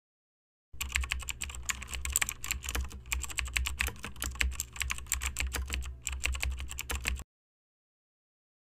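Computer keyboard typing sound effect: rapid, irregular key clicks over a low hum, starting about a second in and cutting off abruptly near the end, as text is typed out on screen.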